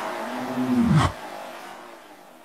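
Breakdown effect in psytrance music: a low droning tone that bends sharply down in pitch and cuts off about a second in, with a brief high whoosh at the same moment, then a fading tail.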